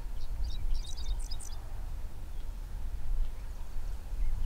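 Small birds chirping: a quick run of short high chirps in the first second and a half, then faint single chirps, over a steady low rumble.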